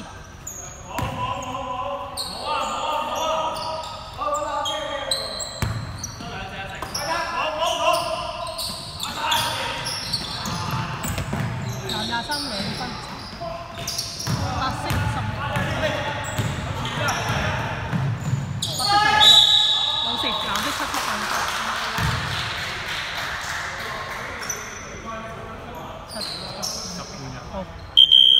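Basketball game play on a hardwood gym floor: the ball bouncing and players calling out to each other, echoing in the hall, with a louder outburst of voices about two-thirds of the way through.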